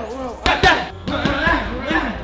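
Boxing gloves hitting focus mitts during pad work: a few sharp slaps in quick succession near the middle.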